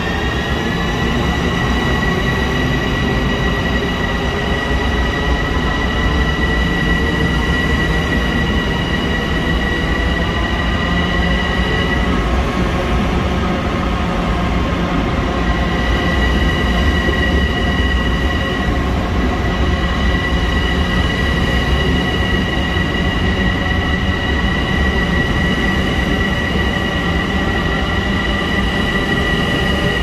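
Long Island Rail Road electric multiple-unit train moving slowly along the platform in an underground station. A steady high whine rises at the start, then holds, and drops out twice briefly, over a continuous low rumble of the cars.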